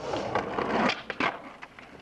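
Skateboard wheels rolling on pavement, loud for about the first second and then fading, with a few short clacks of the board.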